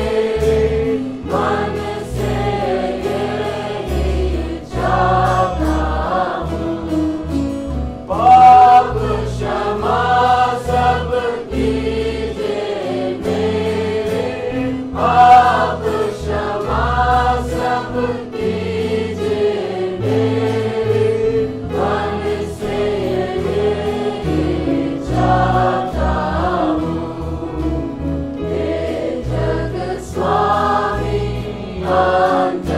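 A choir singing a Christian worship song, with sustained low accompaniment.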